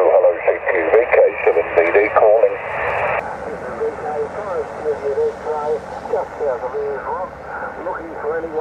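Single-sideband voice received on the 40-metre amateur band, coming from a Yaesu portable HF transceiver's small speaker: thin, narrow-band speech with no clear words. A band of hiss joins it about three seconds in.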